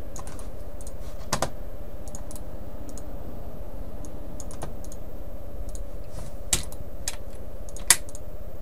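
Typing on a computer keyboard: scattered keystrokes with a few sharper, louder clicks, over a steady low background hum.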